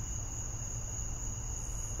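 Background noise of the recording in a pause between speakers: a steady high-pitched whine over a low hum.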